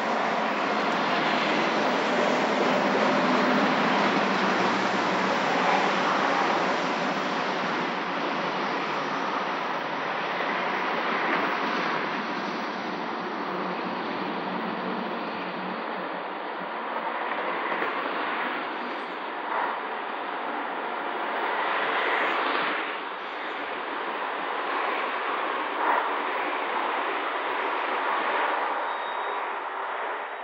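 Steady city street and traffic noise, with a few brief louder sounds in the second half.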